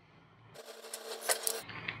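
Soldering iron melting solder onto a wire at a small circuit-board pad: a faint sizzle with a few small crackles, lasting about a second.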